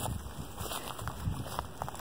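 Wind buffeting the microphone in an uneven low rumble, with a few faint clicks and crackles.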